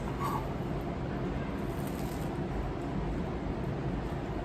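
Steady low background noise of the room with no distinct events: room tone.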